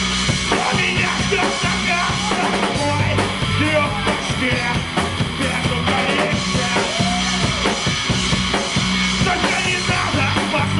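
Live rock band playing loudly: a drum kit beating steadily under electric guitar and a bass guitar riff.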